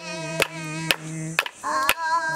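Wooden clapsticks struck together in a steady beat, about two strikes a second, accompanying singing.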